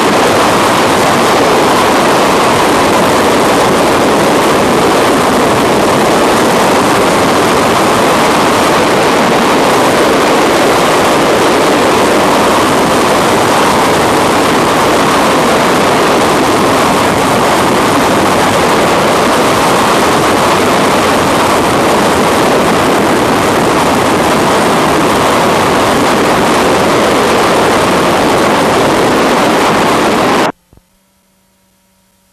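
Freefall wind rushing past the microphone: a loud, steady rush with no breaks.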